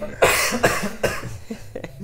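A person coughing: three harsh coughs in quick succession, about half a second apart, the first the loudest.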